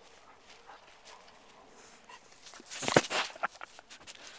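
A dog's nose and mouth on the camera: a short run of snuffling, licking and bumping noises right at the microphone about three seconds in, loud against the quiet pasture.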